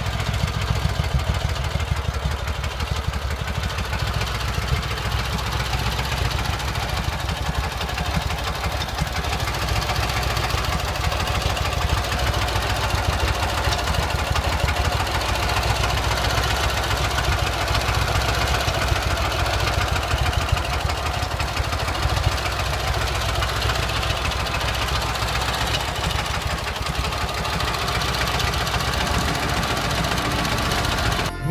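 Harley-Davidson XA's air-cooled flathead opposed-twin engine idling steadily, with a fast, even firing beat.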